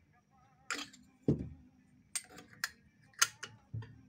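Irregular small metal clicks and taps, about six in all, as the round cover at the end of a Singer 18-22 sewing machine's free arm is handled and fitted.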